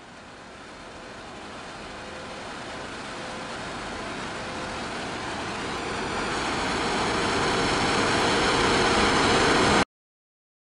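Drilling rig machinery noise: a steady industrial noise with a faint hum, growing steadily louder throughout, then cutting off suddenly just before the end.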